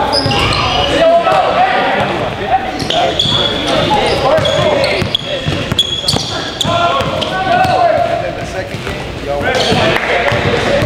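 Indoor basketball game: the ball bouncing on the court, sneakers squeaking in short high chirps, and players and onlookers calling out, all echoing in a large gym.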